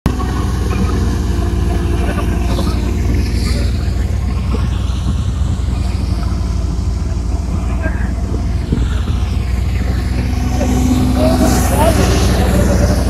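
Tractor-driven wheat thresher running steadily at constant speed, a loud low engine drone with the machine's rumble underneath.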